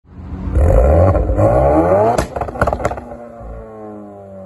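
Tuned 1.4 MultiAir turbo four-cylinder engine revved hard in place, its pitch climbing steeply to the hard-cut rev limiter at 7400 rpm. Just after two seconds it hits the cut with a sharp crack, a couple more cracks follow, and the revs fall away toward idle.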